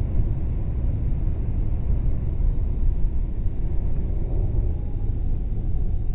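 Wind rumble on a motorcycle-mounted camera's microphone while a Triumph Street Triple R is ridden at about 50–60 mph. The inline-three engine's note sits faintly under it, easing down in pitch in the second half as the bike slows.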